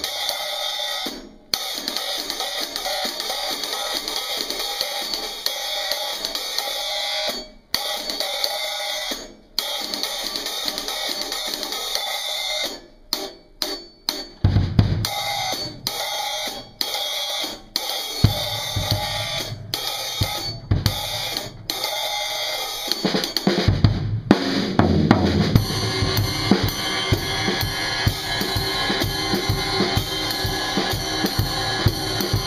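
10-inch Zildjian A Special Recording hi-hats played with drumsticks in a fast, steady pattern, stopping briefly a few times. About fourteen seconds in, bass drum and snare hits join and it becomes a full drum-kit groove, with more continuous cymbal wash near the end.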